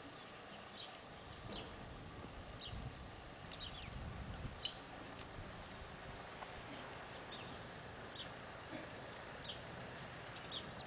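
Faint outdoor quiet with short, high bird chirps scattered every second or so, and a soft low rumble a few seconds in.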